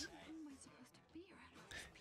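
Faint speech, a quiet voice just above silence.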